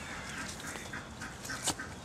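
Animal calls: a run of short repeated calls and a downward-sliding call, with one sharp click near the end.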